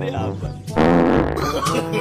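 A loud fart sound effect about a second in, a raspy blurt lasting just over half a second, laid over background music with a voice.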